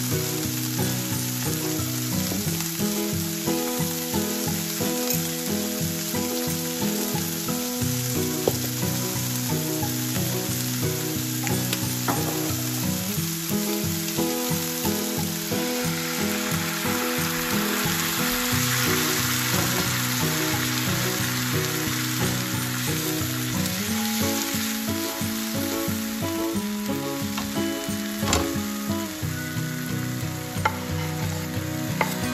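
Bean sprouts sizzling in a hot non-stick frying pan. About halfway through, water is poured in and the sizzle swells into a louder hiss for several seconds, then eases back.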